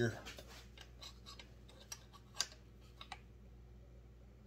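A few faint, sharp clicks and taps from tools and the pen being handled at a workbench, the loudest about midway, over a low steady hum.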